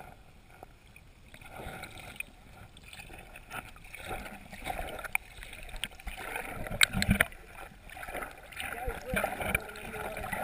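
Muffled water sound heard through a camera held under lake water: sloshing and gurgling, with a few sharp knocks or clicks scattered through it.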